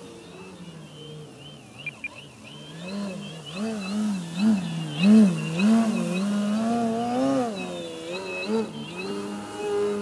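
RC aerobatic plane's motor and propeller, its pitch swinging up and down in quick swells about twice a second as the throttle is pumped to hold a low nose-up hover, louder in the middle. Two sharp ticks about two seconds in.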